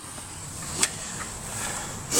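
Rustling handling noise from a handheld camera being swung round inside a van cab, with one sharp click a little under a second in.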